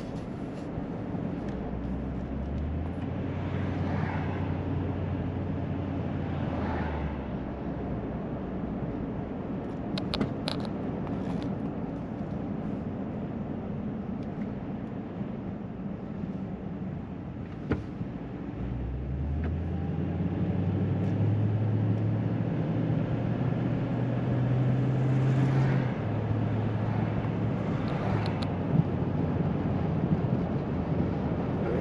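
Vehicle engine and tyre noise heard from inside the cab while driving. The engine note rises and holds higher twice, as it picks up speed, over a steady road hum, with a few faint clicks.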